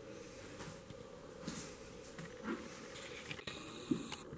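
Soft, brief taps and scuffs of a spotted cat pawing and batting a small food item on a hardwood floor, about three of them, the loudest near the end.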